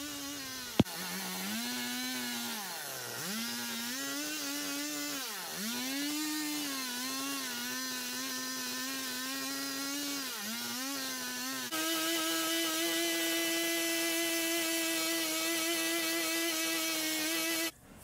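Small Stihl MS 170 chainsaw, running an aftermarket replacement engine, carving yellow pine. Its engine note dips and recovers again and again as the chain bites into the cuts. For the last six seconds or so it holds a steady, higher pitch, then cuts off suddenly.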